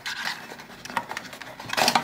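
Cardboard box and its card insert being pulled open by hand, with the plastic smart plug sliding out: rubbing and scraping of card and plastic, loudest near the end.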